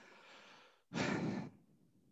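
A person sighing while thinking over a question: a faint breath, then a louder breathy exhale about a second in, lasting about half a second.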